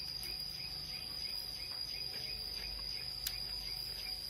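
Insects chirping about three times a second over a steady high-pitched drone, with one sharp click a little past three seconds in.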